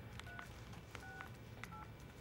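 Phone keypad tones: three short, faint dual-tone beeps, unevenly spaced, as buttons are pressed to set up call forwarding, with light key clicks between them.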